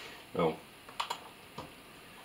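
Clicks on a laptop: two quick sharp clicks about a second in and a fainter one shortly after, as the pointer works the settings screens.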